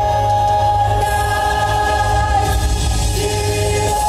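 Choral music: a choir singing long held notes over a steady low bass accompaniment, a lower note joining about three seconds in.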